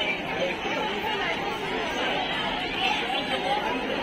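Crowd chatter: many people talking at once, a steady babble of overlapping voices.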